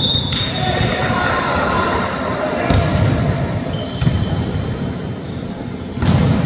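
Volleyball rally in an echoing sports hall: the ball is struck sharply twice, about halfway through and again a second later, with players' voices around it.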